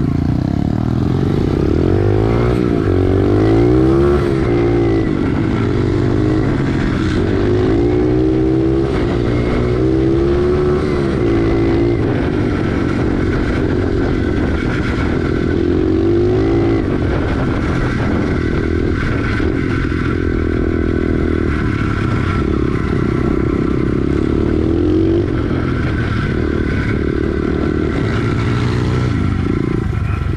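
SSR pit bike's single-cylinder four-stroke engine running under way, heard close up from the bike itself, its revs rising and falling again and again with the throttle.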